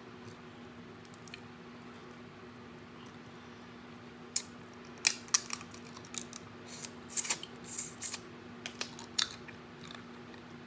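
Wet eating sounds from boiled crawfish being sucked and eaten off the fingers: a string of sharp sucks and lip smacks starting about four seconds in and running until near the end, over a faint steady hum.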